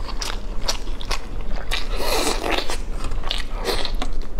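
Close-miked biting and tearing at a roast chicken leg, a quick series of sharp, crackly crunches as the meat and skin are pulled off with the teeth.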